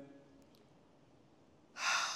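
A man's sharp, audible in-breath close to the microphone near the end, drawn just before he calls the next count; before it, near quiet.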